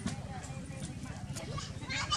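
Outdoor ambience: a steady low rumble under indistinct voices, with a few short high chirping calls and light clicks.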